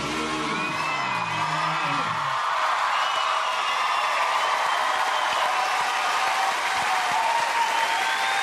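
Music ends on a final held chord about two seconds in, and a studio audience then applauds.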